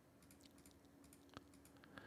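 Near silence with a few faint computer keyboard clicks.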